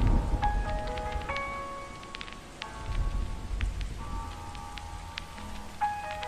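Lofi hip hop beat of soft held keyboard chords that change every second or so over a low bass, laid over a steady rain ambience with scattered raindrop clicks.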